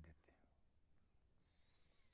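Near silence: faint room tone in a pause in speech.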